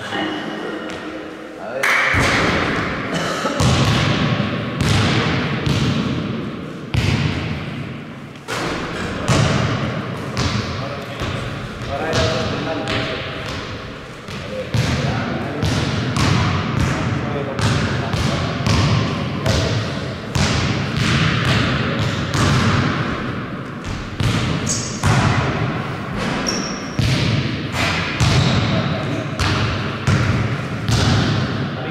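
Basketball game sounds: the ball bouncing on the court with repeated thuds throughout, mixed with players' voices calling out.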